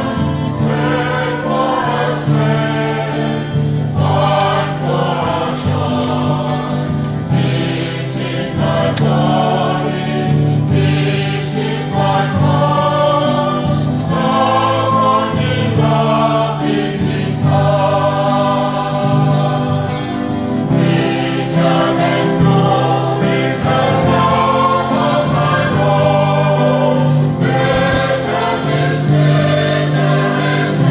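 Church choir singing a hymn, many voices in held, changing chords over sustained low notes.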